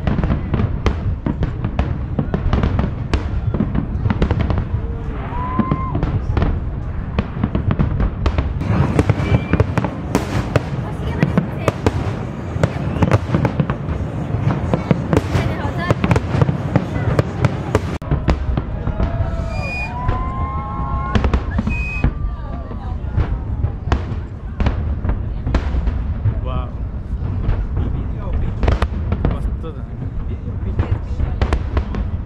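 Fireworks display: a dense, unbroken run of bangs and crackles from aerial shells bursting.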